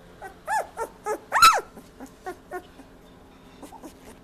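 18-day-old Labrador Retriever puppies squeaking and whimpering: a string of short, high cries over the first two and a half seconds, the loudest a rising-and-falling squeal about one and a half seconds in.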